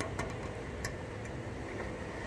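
Steady background hum and rumble, with a few faint clicks in the first second.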